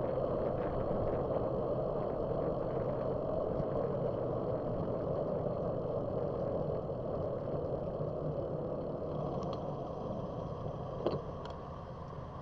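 Steady wind and road rush on a bicycle-mounted camera while riding, fading in the last few seconds as the bike slows; a single sharp click about eleven seconds in.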